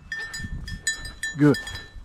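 A small bell on a running hunting dog ringing in quick, irregular strikes with her stride.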